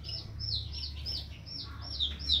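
Grey Java sparrow calling in its cage: a quick, steady run of short, high chirps, each falling in pitch, about four a second.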